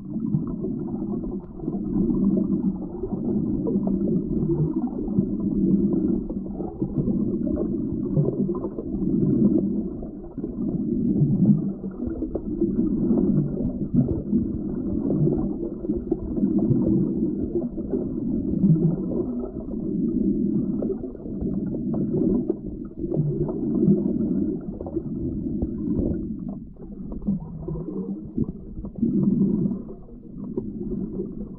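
Muffled low rumble of river current heard underwater, swelling and easing every second or two, with no high sounds at all.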